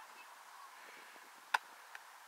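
A football struck once with a single sharp, loud smack about three-quarters of the way in, followed by a much fainter tap, over a faint steady outdoor hiss.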